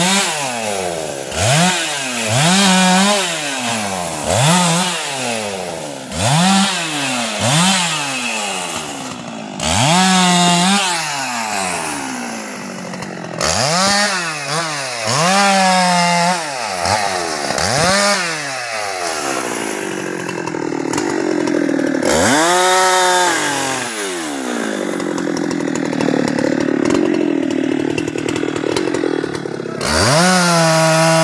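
Husqvarna 390 XP two-stroke chainsaw cutting up a felled teak tree. It revs up and drops back about once a second for much of the time, then runs lower and steadier under load in the later part.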